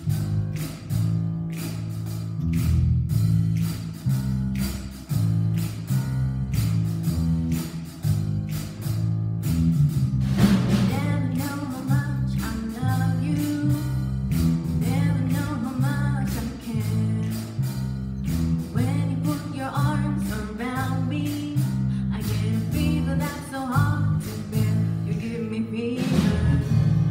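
A band playing a piece: a steady percussion beat over changing low bass notes, with a higher melody coming in about ten seconds in.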